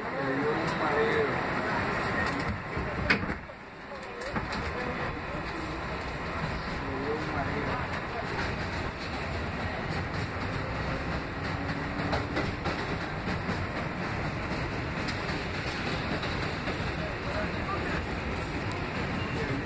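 Kawasaki R188 subway car getting under way out of a station and running on elevated track, heard from inside the car: a steady rumble of wheels on rail, with a couple of sharp clicks about three seconds in.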